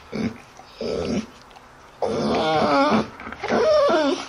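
Dog whining: two short whimpers, then a longer whine with a wavering pitch about two seconds in, and another short whine near the end.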